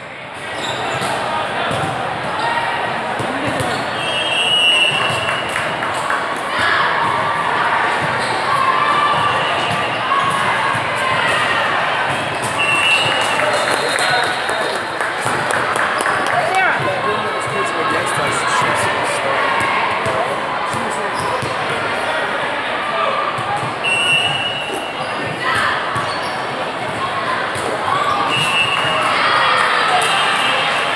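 Busy indoor volleyball hall: volleyballs being struck and bouncing on the courts, with a constant hubbub of players' and spectators' voices echoing in the large room. Several short, high referee whistle blasts sound at intervals.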